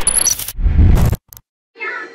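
Title-card sound effects: a burst of electronic glitch noise with short high beeps, then a heavier low hit that cuts off suddenly just over a second in. A voice begins near the end.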